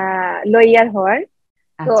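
A woman's wordless, drawn-out vocal sound: a held 'aah' for about half a second, then a shorter wavering sound that rises in pitch. A short pause follows before speech resumes near the end.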